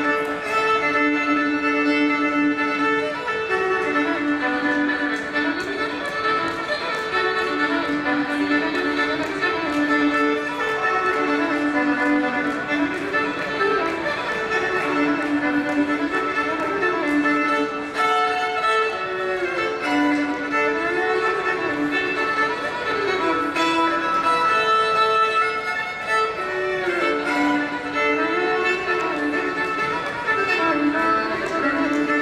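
Solo fiddle playing a breakdown, a lively fiddle tune. Held pairs of notes alternate with quick up-and-down runs in repeating phrases.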